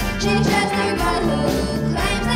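School wind band music: brass and woodwinds playing a pop arrangement over held low bass notes.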